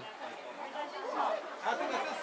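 People's voices talking: low background chatter, quieter than the narration around it.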